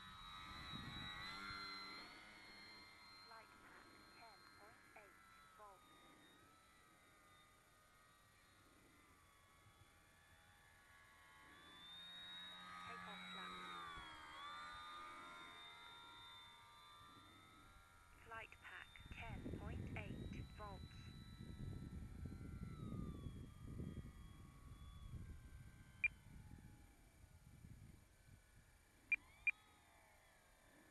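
Distant whine of an electric RC plane's motor and propeller, the pitch sliding up and down as the throttle changes and the plane passes. Partway through, a louder low rumbling noise comes in for several seconds, and a few sharp clicks follow near the end.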